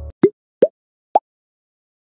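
Outro piano music cuts off, then a logo sound effect: three short rising pops, each higher in pitch than the last, about half a second apart.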